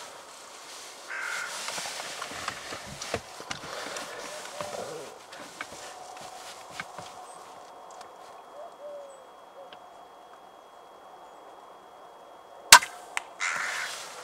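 An air rifle fires once near the end, a single sharp crack followed by a couple of faint clicks; it is the shot that knocks a carrion crow off a treetop at about 50 metres. Before it, crows caw now and then in the background.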